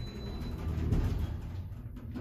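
Otis hydraulic elevator's rear car and landing doors sliding open, with a steady low rumble from the door mechanism. A faint high tone fades out about half a second in.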